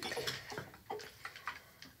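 Faint, scattered light taps and clicks of small objects being handled on a countertop.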